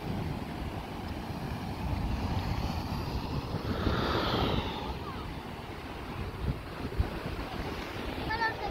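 Sea surf breaking and washing over rocks, swelling to its loudest around the middle, with wind buffeting the microphone. There are a couple of short low thumps near the end.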